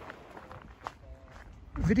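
Faint footsteps on a dirt hiking trail, with a person's voice starting near the end.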